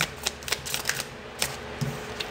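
Tarot cards being shuffled and handled by hand, a series of light, irregular clicks and taps as the deck is split and cards are set down on a cloth.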